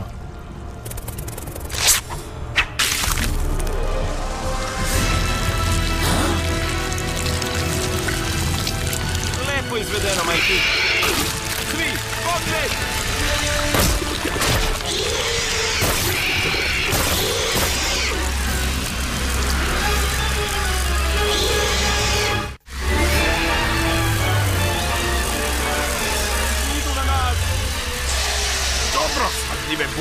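Cartoon action-scene soundtrack: a steady music score with sharp hit and crash sound effects layered over it. The sound drops out briefly about two-thirds of the way through.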